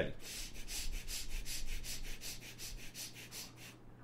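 Quick, short, gentle breaths in and out through both nostrils, a rapid run of about five sniffing strokes a second from a breathing exercise, growing fainter near the end.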